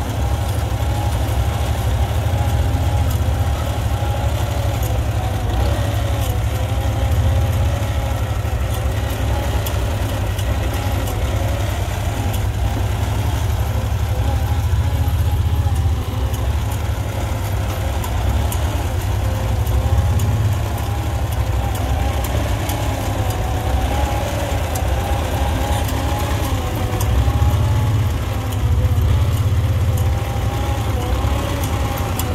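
Farmall Super A tractor's four-cylinder engine running steadily under load as it pulls a cultivator through a corn row, heard close up from the seat.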